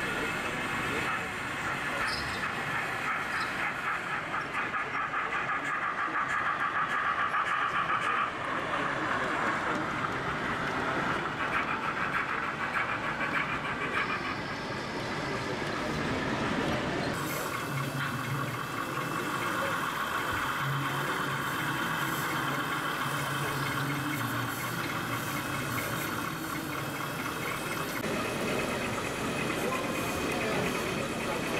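Indistinct crowd chatter in a busy exhibition hall, mixed with the running noise of model trains on their track. The sound shifts abruptly a few times.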